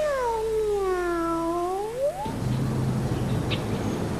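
A single long, drawn-out meow for the cartoon-style cat character Kaz: it dips in pitch and rises again at the end, and lasts about two seconds. A low steady tone follows briefly.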